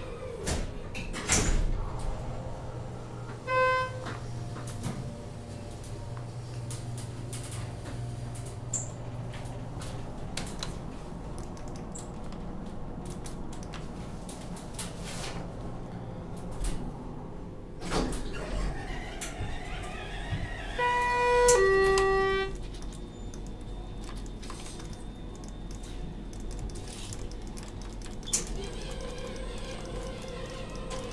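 Elevator ride: a low hum for the first ten seconds or so, a single bell-like chime about four seconds in, and a two-note falling elevator chime a little past two-thirds through, with a few knocks along the way.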